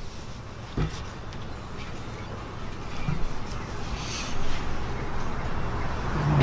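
Light knocks and scrapes of metal inside a Big Green Egg ceramic kamado grill as the drip pan is worked out from under the grate, over a steady rushing background noise.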